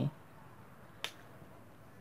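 A whiteboard marker gives a single sharp click about a second in, in an otherwise quiet room. A brief low vocal sound comes right at the start.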